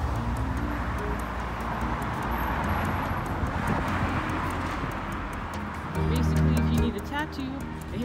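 Street traffic: a car drives past, its noise swelling to a peak in the middle and then fading. Background music with a singing voice plays throughout and grows louder for the last two seconds.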